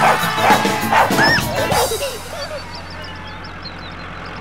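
A cartoon dog barking and yipping over the closing bars of a children's song, the music then fading away. Faint high chirps come near the end.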